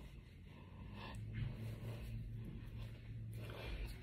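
Faint rustling and handling noise of synthetic wig hair brushing against the microphone as the wig is pulled on and settled, with a few soft clicks. A low steady hum runs underneath from about a second in until near the end.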